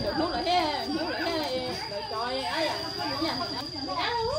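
Several people talking at once, adult women's and children's voices overlapping in lively chatter, with a steady high-pitched tone underneath.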